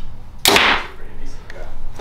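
A Prime Inline 33-inch compound bow shooting an arrow: one sharp crack of the string release about half a second in, dying away within about half a second.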